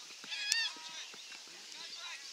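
Players and spectators calling out on a football field, with one loud, shrill shout and a sharp knock about half a second in.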